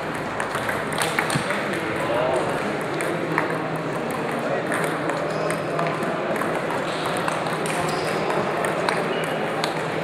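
Table tennis balls clicking against the tables and bats in quick, irregular strokes from rallies on several tables, over steady background talk.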